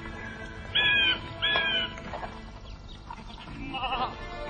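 Two short bleats from an animal, about a second in and half a second apart, over soft background music.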